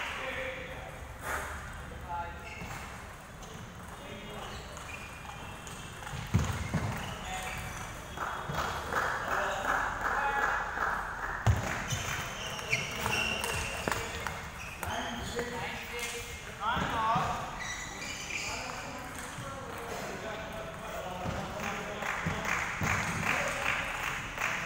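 Table tennis ball clicking off bats and the table during a rally, over the steady murmur of voices in a large hall.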